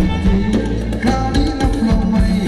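Thai ramwong dance music from a live band over loudspeakers: a steady drum beat under held melody notes.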